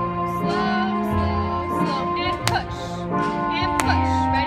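Music with a singing voice over held instrumental notes, broken by two sharp clicks a little over a second apart in the second half.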